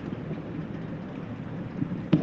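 Steady background noise: a low, even rumbling hiss with no distinct events, between phrases of speech.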